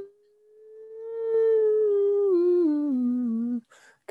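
A man humming one long, drawn-out note that holds and then slides down in small steps for about three seconds, a thinking "hmmm" while working out the answer.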